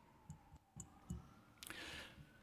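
A few faint clicks in near silence, then a brief rustle near the end: paper and a folder being handled in front of a desk microphone.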